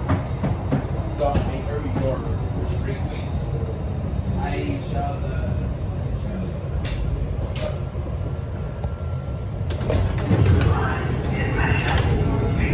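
Steady low rumble of a MAX light rail train in the tunnel as it pulls into the underground station and stops. Sharp clicks come about seven seconds in as the doors open, followed by a short steady tone.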